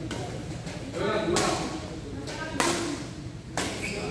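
Badminton rally in a large sports hall: a few sharp racket hits on the shuttlecock, about a second apart, over players' voices and calls.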